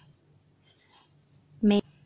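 Quiet background with a faint, steady high-pitched whine, and one spoken word near the end.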